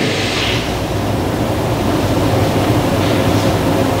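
Steady background hiss with a low, steady hum underneath, fairly loud, filling a pause in the spoken prayer.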